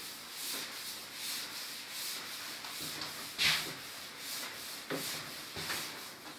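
A cloth wiping a chalkboard in repeated back-and-forth strokes, a dry scrubbing rub, with one louder stroke a little past halfway through.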